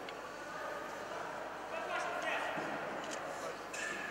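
Indistinct voices and chatter echoing in a large sports hall, with a few faint sharp ticks.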